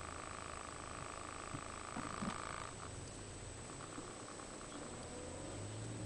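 Toyota MR2 Turbo's turbocharged four-cylinder engine idling, heard from inside the cabin. A steady high hum cuts off a little under three seconds in, a few faint clicks follow, and a low rumble grows near the end.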